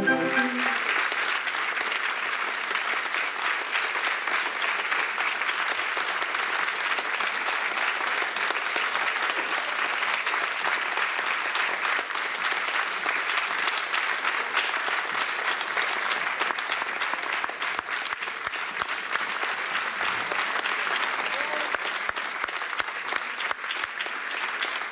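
An audience applauding: a long, steady round of clapping.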